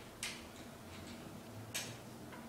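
Two light footsteps on a hard vinyl floor, short sharp clicks about a second and a half apart.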